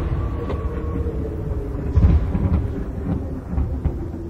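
Low rumbling sound effect of a logo sting, the tail of a lightning-strike impact, swelling again about two seconds in and slowly dying away, with a faint held tone over it.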